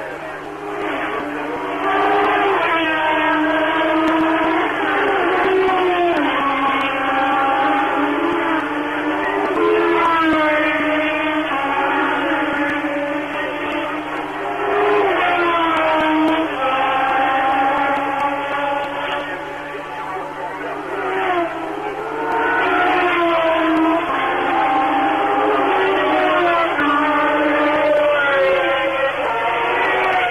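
1976 Formula One race car engines at full throttle, one car after another. Each engine's pitch climbs through a gear and drops sharply at the upshift, and some notes overlap. The sound is thin and narrow, as in old television audio.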